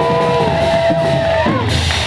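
A short burst of live rock-band music: several steady held notes over a low, busy rhythm bed, with one note bending upward near the end.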